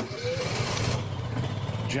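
Honda inverter generator started with its electric start key: a click, under a second of starter cranking as the engine catches, then the engine running with a steady low hum.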